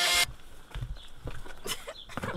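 Intro music cuts off suddenly about a quarter second in, followed by low thumps, rustling and clicks of bedding and bags being pushed into a car's rear cargo area.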